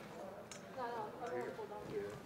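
Indistinct voices of people talking, starting about a second in; no words can be made out.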